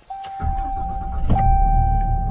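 2021 Ram 3500's 6.7-litre Cummins turbo-diesel inline-six push-button started, catching about half a second in and settling into a steady idle, heard from inside the cab; a warm-weather start that needed no preheat. Over it a steady electronic chime tone from the dash holds, breaking briefly with a click a little over a second in.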